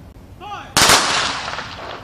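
A Marine rifle party fires one ceremonial rifle-salute volley together as a single sharp shot that echoes and dies away over about a second. A short shouted command comes just before the shot.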